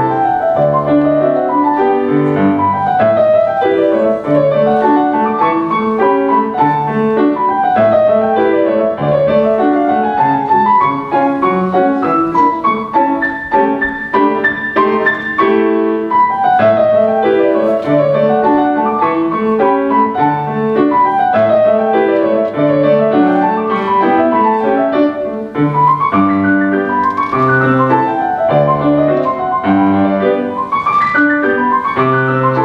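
Steinway & Sons concert grand piano played solo in a classical piece: flowing runs of notes that rise and fall in repeated waves over low bass notes.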